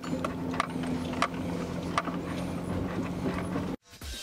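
An old Jeep Grand Cherokee running steadily as it drives slowly away over a leaf-covered forest track, with irregular sharp cracks and crunches from under the tyres. The sound cuts off suddenly just before the end.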